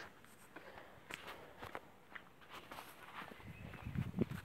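Faint footsteps crunching on gravelly dirt ground, a series of light irregular steps, with a low rumble rising near the end.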